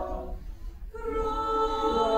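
Mixed choir singing unaccompanied: a held chord is released just after the start, there is a brief pause, and the next chord comes in about a second in.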